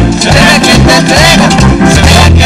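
Dominican merengue played by a live orchestra, with a driving bass line and percussion.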